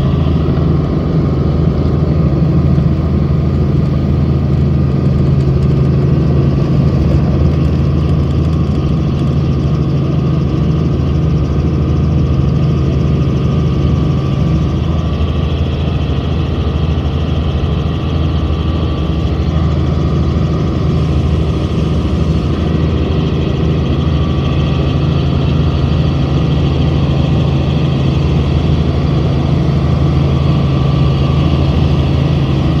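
Robinson R44 helicopter's six-cylinder piston engine and rotors running steadily under power as it lifts off and climbs, heard from inside the cabin as a loud, unbroken drone.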